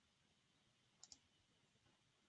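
Near silence broken by a computer mouse button clicking, two quick faint clicks close together about a second in.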